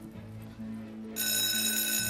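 Soft background music, then about a second in an electric school bell starts ringing, a loud, steady, high-pitched ring.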